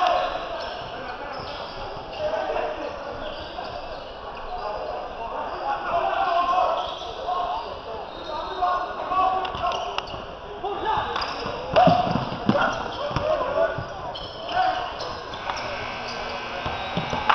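Basketball being bounced on a hardwood gym court during play, with indistinct voices of players and spectators throughout; a cluster of sharp thuds comes about eleven to thirteen seconds in.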